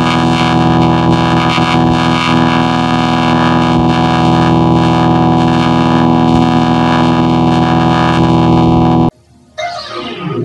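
Electronically processed logo audio with heavy distortion: a loud, dense chord of many steady tones held without change, which cuts off suddenly about nine seconds in. After a short gap, different processed music starts near the end.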